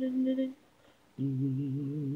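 Unaccompanied wordless singing, hummed: a held note breaks off about half a second in, a brief pause follows, then a lower note starts just after a second in and is held with a slight wobble.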